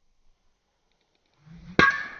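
Golf driver striking a ball off the tee: one sharp, loud crack with a metallic ring that fades over about half a second, near the end.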